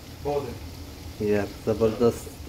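A man talking in short bursts over a steady low sizzle from a pot of mutton curry simmering on a gas stove.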